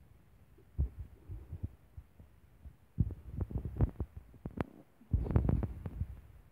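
Handling noise on a phone's microphone: irregular low thumps and rubbing with a few sharp clicks, heaviest about three seconds in and again near the end.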